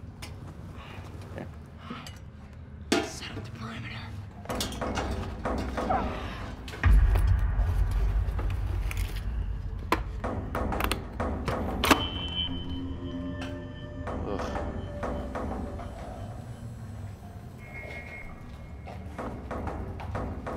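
Film score music with scattered sharp knocks and thuds. A deep low rumble sets in about seven seconds in.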